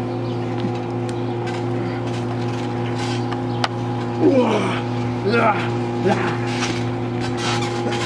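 A steady droning hum runs under the action, with scattered knocks of bodies landing on a trampoline mat. Short voice sounds come in about four to six seconds in.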